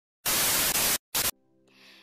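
TV static sound effect: a loud burst of white-noise hiss lasting about three-quarters of a second, cut off, then a second short burst. After it come faint sustained tones that slowly swell.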